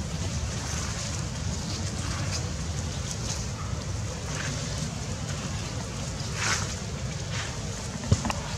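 Steady low rumble of wind on the microphone, with a few brief rustles above it, the loudest about six and a half seconds in.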